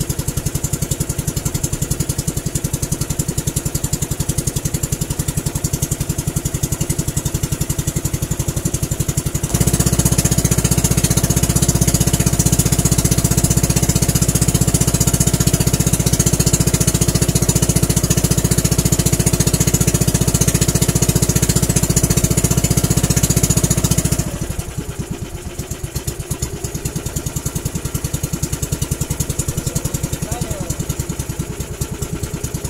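Outrigger boat's inboard engine running with a rapid, even beat. It gets louder about ten seconds in and drops back to a lower level about fourteen seconds later.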